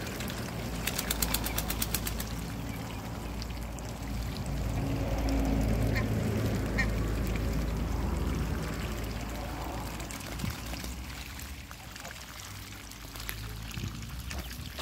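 Muscovy and domestic ducks splashing and bathing in a shallow puddle, with scattered quacks. A quick run of about a dozen sharp ticks comes about a second in, and a low rumble swells through the middle.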